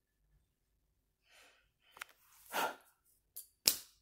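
A breathy sigh about two and a half seconds in, then small clicks and a sharp knock near the end, from a handheld phone camera being handled and moved.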